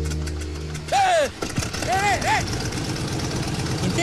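Aircraft engine starting up and then running with a rapid low chugging, after a steady low hum cuts off about a second in. A man yelps "ay" twice over it.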